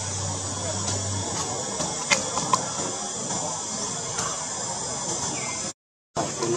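Steady outdoor background hiss with a faint high whine, broken by two small sharp clicks about two seconds in; the sound cuts out briefly near the end.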